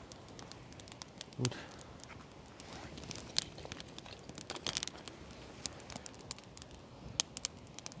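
Small wood fire of stacked kindling burning with irregular crackles and sharp pops, busiest around the middle, while pieces of wood are laid onto the burning stack by hand.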